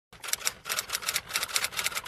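Typewriter clatter sound effect: a fast, uneven run of sharp key clicks, about six a second, that starts and cuts off abruptly.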